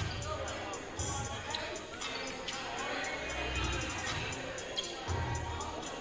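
A basketball bouncing on a hardwood gym floor, with music over the gym's sound system and voices echoing in the large hall.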